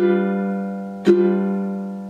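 Ukulele with a low G string, strummed down twice on a G7 chord about a second apart, each strum left ringing and fading away. This is a basic pattern of plain down strums on beats one and three.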